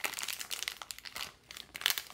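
Clear plastic wrap crinkling in the hands as it is peeled off a small cardboard box: a run of quick crackles, with a short lull about two-thirds of the way through before they pick up again.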